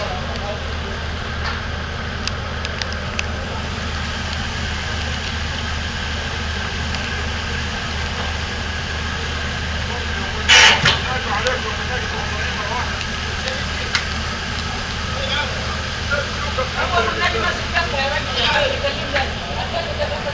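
Steady low hum of cruise-ship engines running while the boats are tied up alongside one another, with a short loud burst about halfway and crew voices calling in the second half.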